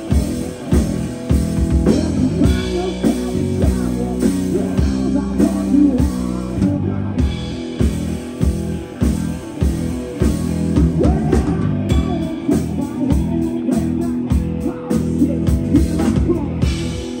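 Live rock band playing an instrumental passage: a red Explorer-style electric guitar through a Marshall amplifier, over a drum kit keeping a steady beat, with a run of quick drum strokes in the last few seconds.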